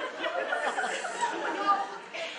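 Several voices talking at once, an indistinct chatter.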